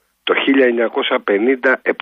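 A man talking in Greek over a telephone line, the voice thin and narrow as on a radio phone-in call.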